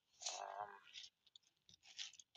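A brief, quiet voiced sound from a man, a murmur rather than a clear word, followed by a few faint scattered clicks and rustles.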